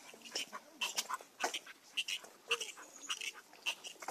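Short, scattered scuffs and clicks from two leashed dogs moving about together on a paved path.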